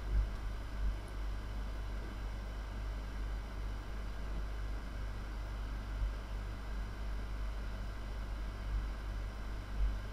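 Room tone of a voice-over recording: a steady low hum with a faint even hiss, and a few soft low bumps.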